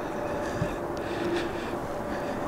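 Steady outdoor background noise with a faint continuous hum and a few light ticks.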